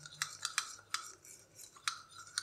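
Metal spoon stirring milk and yellow food colour in a ceramic bowl, clinking lightly against the sides in a steady run of about five clinks.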